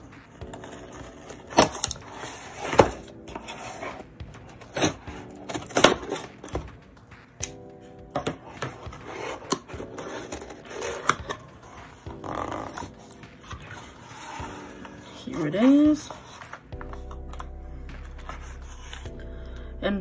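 Scissors cutting through the taped seam of a cardboard mailer box, then the box being pried open and handled: a string of sharp snips, clicks and cardboard scrapes at irregular intervals. Background music plays underneath, and a short vocal sound comes near the end.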